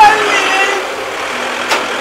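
An SUV's engine running as it drives off, with a woman's voice trailing away at the start and one sharp click shortly before the end.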